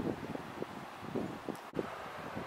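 Wind buffeting the microphone in irregular gusts, with a brief dropout near the end.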